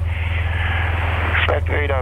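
Cessna 182T's six-cylinder piston engine idling on the ground, a steady low drone heard through the headset intercom, under the hiss of an open radio channel. About a second and a half in, an air traffic controller's voice comes in over the radio.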